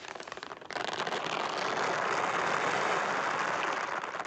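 Wheat grains poured onto a plastic tarp, a dense rain-like hiss of many small grains striking the sheet. It starts suddenly about a second in and then holds steady.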